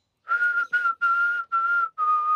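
A person whistling: four short notes at nearly the same high pitch, each with a breathy rush of air around it.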